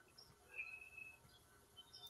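Near silence in a pause between speakers, with a faint, short high-pitched chirp or squeak about half a second in.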